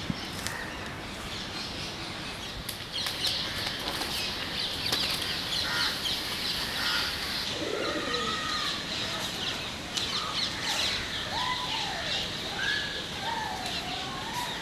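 Birds chirping: a dense, high twittering that thickens about three seconds in, with louder whistled calls in the second half.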